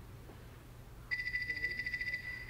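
A telephone ringing: a rapidly pulsing high ring that starts about a second in, after a moment of quiet.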